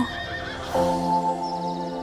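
A horse whinnying over orchestral trailer music. A sustained chord comes in under a second in and holds.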